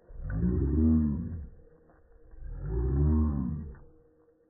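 Two long, deep, drawn-out voice sounds, one near the start and one a little past the middle. Each rises and then falls in pitch, like a slowed-down voice.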